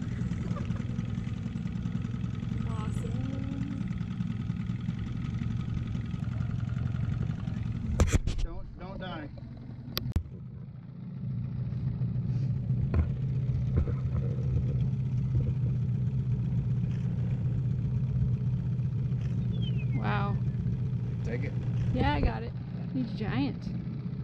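A fishing boat's outboard motor idling steadily. It drops out for a couple of seconds near the middle, with a couple of sharp clicks, then comes back.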